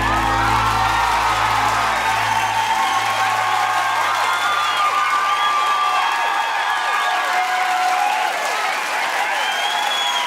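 Applause and cheering with whoops break out as the song ends, while the band's last held chord fades away over the first few seconds.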